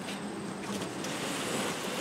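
Steady rushing background noise, with a few faint rustles of foam packaging being handled.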